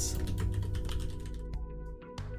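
Typing on a computer keyboard, a run of quick keystrokes, over background music.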